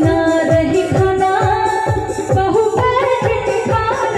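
Live Indian folk-pop song band: a dholak keeps a steady beat of bass strokes that drop in pitch, under an electronic keyboard melody and a singing voice.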